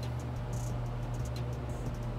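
Low, steady motor hum of electric roller shades being lowered, two at a time, with a few faint ticks.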